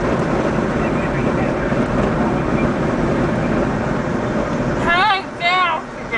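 Steady road and wind noise inside a moving car's cabin, which drops away sharply about five seconds in. Near the end a person's voice makes two wavering, drawn-out sounds.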